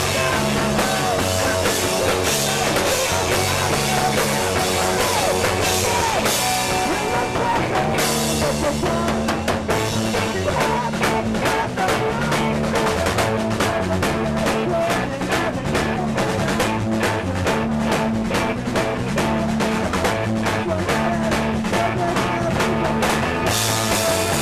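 A rock band playing live and loud: a drum kit with crashing cymbals, electric guitar and bass through amplifiers. The drum and cymbal hits grow denser about a third of the way in.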